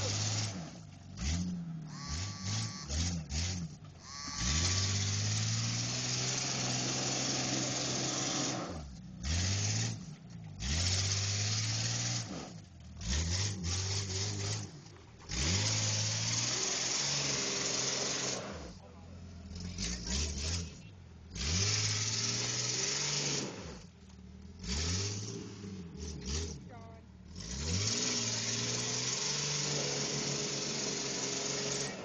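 An SUV's engine revving up and falling back again and again as it tries to drive out of deep mud, with loud bursts of rushing noise as it works.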